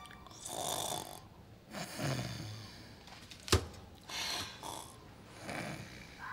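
A girl snoring in her sleep: four slow snores, about one every second and a half, with one sharp click about halfway through.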